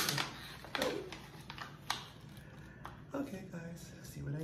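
Crinkling of a clear plastic gift bag and a folded paper slip being handled, drawn out and unfolded: a string of short, sharp crackles.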